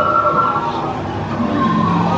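The boat ride's jungle soundtrack: sustained, slowly gliding tones over a low rumble.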